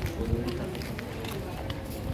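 Outdoor walking ambience: people's voices talking in the background, footsteps, and a steady low rumble.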